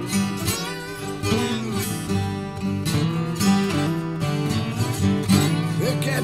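Acoustic blues trio playing a slow instrumental passage on acoustic guitars, with plucked and strummed notes and some bent notes.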